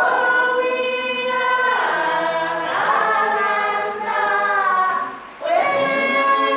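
A church congregation singing a hymn together in long held notes, with a brief break for breath about five seconds in.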